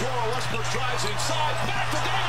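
NBA broadcast game audio: arena crowd noise under a faint play-by-play commentator, with a basketball being dribbled on the court.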